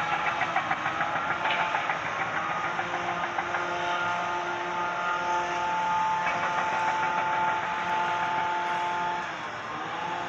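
Engine running, with a fast rattle over the first few seconds, then a steady whine of several held tones that fades a little near the end.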